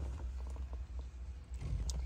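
Faint scattered clicks and rustling over a steady low hum: handling noise from a handheld camera moving around inside a car.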